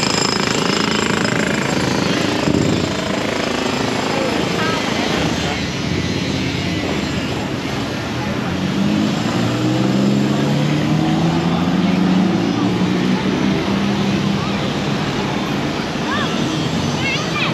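Busy city road traffic heard from the sidewalk, a steady mix of car and motorbike engines and tyres. About halfway through, a heavier vehicle's engine speeds up, rising in pitch for several seconds.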